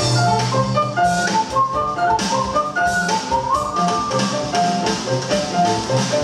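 Live instrumental band music: a grand piano playing a quick run of notes over a drum kit with cymbals.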